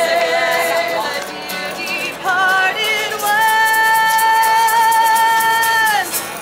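Women's voices singing a folk drinking song over strummed acoustic guitar, with a tambourine shaken along. About three seconds in, the voices settle into one long held note.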